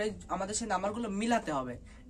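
A young man speaking in Bengali, talking steadily with short pauses.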